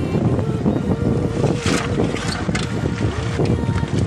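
River water splashing and sloshing as a wooden gold pan is swirled in the shallows, with wind buffeting the microphone.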